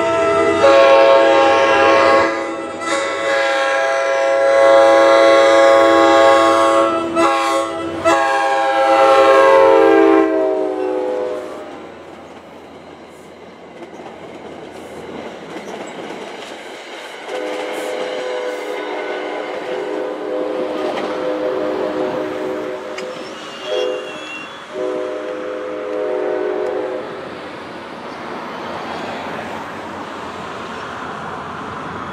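NJ Transit GP40PH-2B diesel locomotive's multi-chime air horn blowing a long, loud chord in several blasts as the train approaches and passes, the pitch dropping as it goes by. Then comes the clickety-clack of the passenger coaches rolling past, and the horn sounds again, lower and fainter, with two short breaks.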